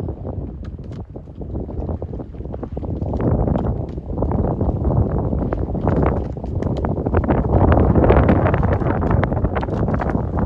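Wind buffeting the microphone: a dense, crackling rumble that grows louder from about three seconds in.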